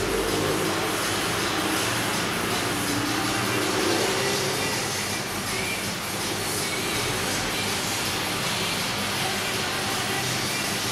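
Steady, even background noise like a recording's hiss, with faint muffled voices in the middle.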